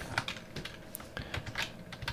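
Computer keyboard keys being typed, a handful of separate, irregular keystrokes.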